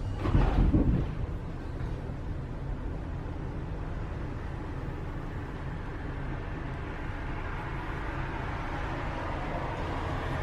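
Interior running noise of a Düwag N8C-MF01 tram under way: a steady low rumble of wheels and running gear on the track. There is a louder, brief rush of noise about a second in, and a mid-pitched noise slowly grows in the second half.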